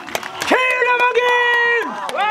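A person's voice holding one long, high, steady call for well over a second, starting about half a second in, with faint clicks around it.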